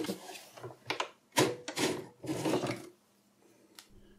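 Metal drive sled scraping and rubbing as it slides in a Mac Pro 1,1's hard-drive bay, in several bursts with small clicks, ending about three seconds in. A single faint click follows near the end.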